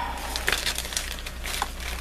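Clear plastic bag crinkling as it is picked up and handled, an irregular run of small crackles with the packed items inside shifting.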